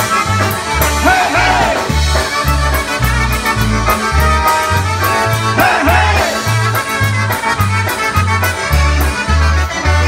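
Live polka band playing an instrumental passage: trumpet melody over a steady oom-pah bass that alternates between two low notes about twice a second.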